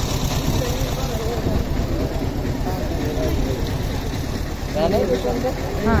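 A low, continuous rumble with faint talk of people around it.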